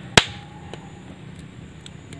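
A single sharp crack about a quarter of a second in, with a brief ringing tail, over a steady low background.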